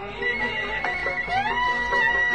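Constantinois malouf ensemble playing an instrumental passage: a violin holds a high note and slides upward into a new held note about halfway through, over short plucked-string notes.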